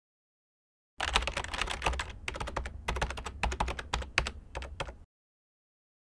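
Typing on a computer keyboard: a fast, uneven run of key clicks that starts about a second in and stops about a second before the end.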